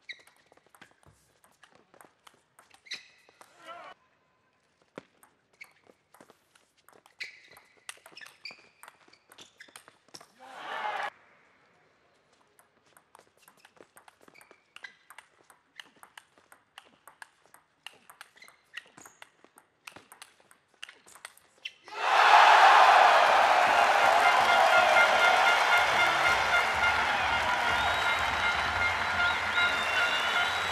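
A table tennis ball clicks sharply off bats and table through the rallies, with brief crowd shouts between points. About 22 s in a large crowd breaks into loud cheering and applause after the final point, and it goes on.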